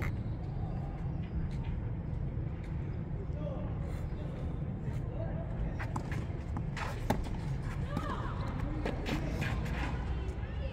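Tennis ball struck by rackets in a rally: a few sharp hits a second or so apart in the second half, over a steady low rumble, with faint distant voices.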